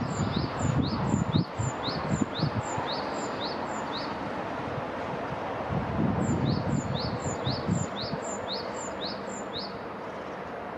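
A bird calling in two runs of short, sharp whistled notes, each note rising quickly, about two a second; the first run stops about four seconds in and the second starts about two seconds later. Low rumbling noise comes and goes underneath.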